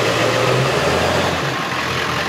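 Engine of a lifted 4x4 pickup truck running as it turns close by through an intersection. Its low engine note drops in pitch a little under a second in, over steady street noise.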